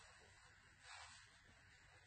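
Near silence: room tone, with a faint, brief rustle of cotton fabric about a second in as a turned potholder is pressed and its corners pushed out by hand.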